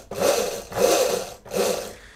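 The scooter's 24 V 250 W electric motor whirring in three short surges as the twist throttle is blipped. The builder puts the sagging power down to a weak battery.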